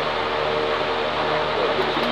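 Electric fan running with a steady whirring hum.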